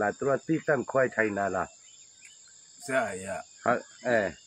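A man talking in bursts, pausing for about a second in the middle, over a steady high-pitched insect chorus that runs without a break.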